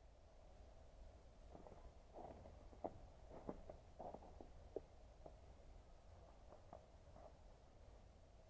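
Near silence with a dozen or so faint, sharp clicks and taps scattered through the middle few seconds over a low background hum.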